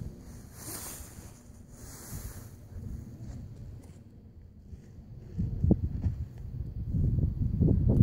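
Wind buffeting the microphone. Low, irregular thudding grows louder over the last few seconds: the hoofbeats of a cantering horse on arena sand coming closer.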